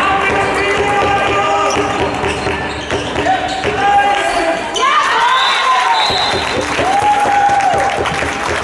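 Handball game play in a reverberant sports hall: the ball bouncing on the floor and players' shoes squeaking, with two long squeaks in the second half, over players calling out.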